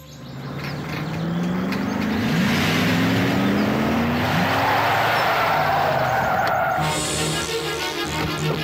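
A car driving in fast: engine and tyre noise build to a loud rush over the first two seconds, with the engine note climbing, then it cuts off sharply near the end and background music takes over.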